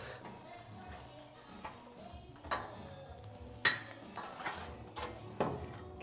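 A few light metallic clinks and taps: a nut and hand tool being fitted to a bolt on a steel car frame.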